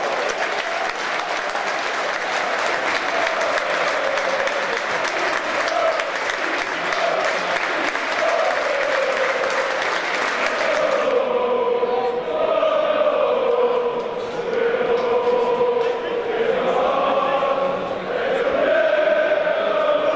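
Football supporters singing a chant together in a stadium, with clapping and crowd noise thick over the first half. About halfway through the noise thins and the sung tune comes through more clearly.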